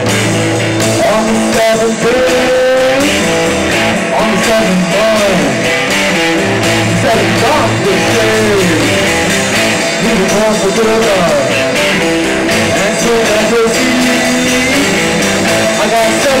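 A rock band playing live through a PA: electric guitars over bass and a drum kit, at a steady loud level, with bending lead lines on top.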